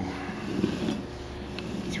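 Light metallic clicks and rattle from an automatic transaxle's clutch drums and planetary gearset being turned slowly by hand.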